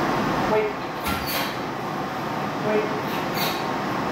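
Kennel-room ambience: steady background noise with a few brief clinks or rattles and short squeaks among a row of plastic dog crates.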